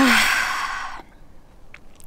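A woman sighing: a breathy exhale about a second long that opens with a brief, falling voiced note.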